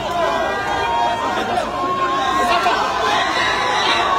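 A large crowd talking and shouting over one another, with some cheering.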